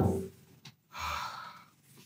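A man's sigh, a single soft exhale about a second in. At the start, the tail of a loud thud is still dying away.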